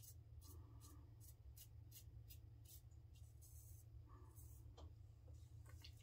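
Faint, quick scraping strokes of a safety razor over a lathered scalp, two or three a second: light buffing passes at the end of a head shave.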